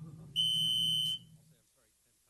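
A single steady, high-pitched electronic beep from a public-comment speaker timer, lasting under a second, marking the end of the commenter's speaking time.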